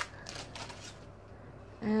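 Clothing packaging rustling and crinkling in the hands as a shirt is unwrapped, mostly in the first second, then a brief spoken "um" near the end.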